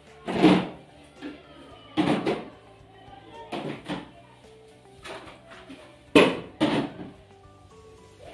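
A series of sharp knocks and thuds as plastic food containers are pushed into a fridge-freezer and its drawers and shelves are handled, the loudest about six seconds in. Quiet background music runs underneath.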